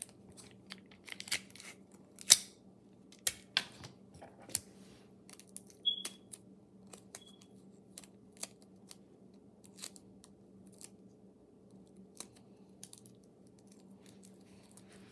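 Handling noise: a fabric hoodie sleeve rubbing and bumping against the recording phone, giving a string of irregular sharp clicks and knocks, the loudest a little over two seconds in, with a short high squeak about six seconds in. A faint steady hum runs underneath.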